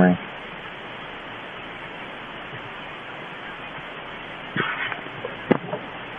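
Steady, even hiss of background noise with no speech. About four and a half seconds in comes a brief rustle, and near the end a single click.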